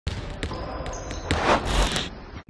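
Intro sound effect: a handful of sharp clicks or knocks over a glitchy hiss, swelling louder in the last second.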